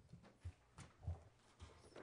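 Faint footsteps of a man walking on a raised meeting-room platform: a few short, unevenly spaced thumps.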